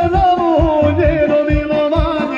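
Bosnian kolo folk music with a steady, even bass beat, a voice holding one long, slightly wavering note over it.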